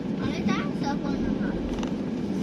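A vehicle driving slowly along a street: steady engine and road rumble, with brief voices over it in the first second.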